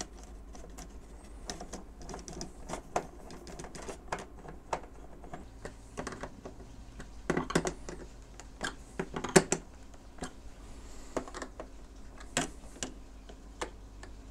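Irregular clicks and taps of small plastic and wire parts being handled and snapped into place as landing gear is fitted to a foam RC model biplane. The clicks come thickest and loudest a little past halfway.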